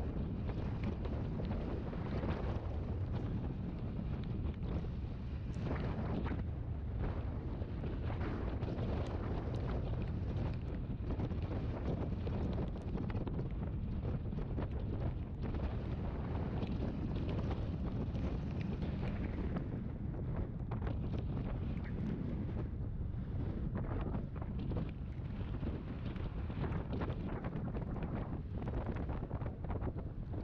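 Steady wind rush buffeting the microphone of a moving scooter's camera, with the scooter's engine running underneath.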